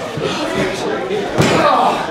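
A single loud slam in a wrestling ring about a second and a half in, with voices and crowd chatter in the hall around it.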